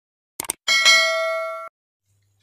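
Subscribe-button sound effect: a quick mouse double-click, then a bright bell ding that rings for about a second and cuts off suddenly.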